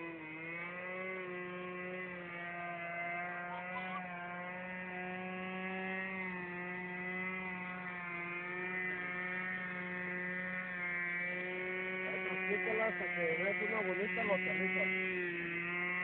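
Electric RC model airplane, a T-28 Trojan, flying: its motor and propeller give a steady buzzing drone whose pitch wavers slightly as it flies. Faint voices come in near the end.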